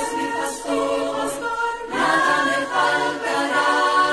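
Choir singing long held notes in a Catholic worship song, with little or no bass underneath. The chord changes about halfway through.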